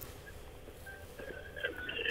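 Faint hiss of an open telephone line on a call-in broadcast, with faint short sounds coming over the line from the caller's end in the second half.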